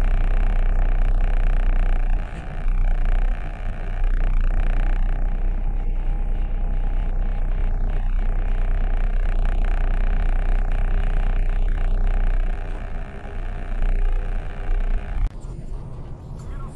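Steady low engine rumble with a hum of noise, heard from inside a stopped vehicle's cab. It drops off abruptly near the end.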